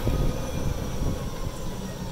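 Golf cart running along a paved road: a low rumble with a faint steady whine over it.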